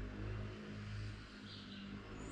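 A steady low mechanical hum and rumble.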